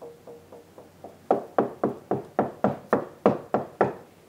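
Knuckles rapping on a wall, about four knocks a second. The knocks are faint and dull for the first second, where chimney bricks lie behind the wall, then turn much louder and hollow from about a second in, over a hollow cavity in the wall.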